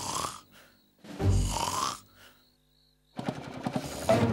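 Cartoon snoring from a sleeping old cavalry guard: the tail of one snore at the start, then a full snore with a rising pitch about a second in. Music comes in near the end.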